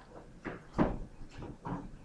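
Short knocks and scrapes of a pen writing a letter on an interactive writing surface, about four separate strokes.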